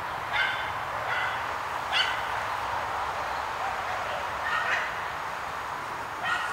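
A dog giving four short, high-pitched barks, spaced irregularly, with the third the loudest.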